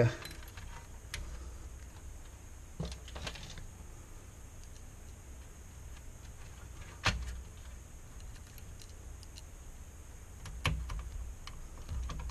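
A few light clicks and taps of small hand tools and a screw against the monitor's sheet-metal chassis, several seconds apart, over a low steady hum.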